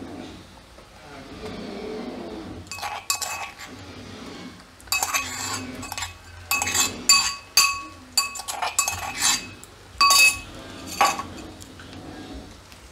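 A spoon clinking and tapping against a bowl as ginger-garlic paste is scraped into a pan of hot oil: a series of sharp, ringing clinks from about three seconds in, under a faint sizzle of the oil.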